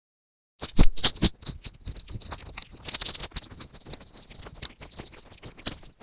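Clear plastic sheet crinkled and handled close to the microphone: dense crackling with sharp crackles, starting suddenly just over half a second in and loudest around a second in.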